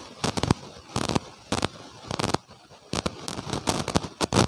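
Clip-on lavalier microphone rubbing against clothing and being handled, giving a string of irregular, sharp crackles and scrapes.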